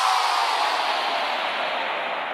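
Synthesised white-noise sweep falling in pitch and fading out after the beat drops away, the closing effect of an electronic dance remix.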